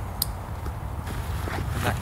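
Rustling and handling of a backpack's fabric drawstring top as it is pulled open, with one sharp click about a quarter second in, over a steady low rumble.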